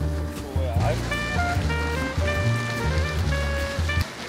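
Background music: a mellow track with a strong bass line and held melody notes, cutting off suddenly at the end.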